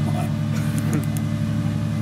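A steady low machine drone, unchanging throughout. Over it, a man says a brief "come on" with a laugh.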